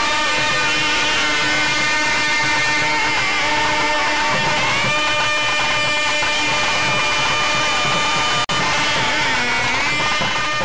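Loud, continuous temple worship music: a melody line that holds notes and slides between them over a dense backdrop. The sound cuts out for an instant about eight and a half seconds in.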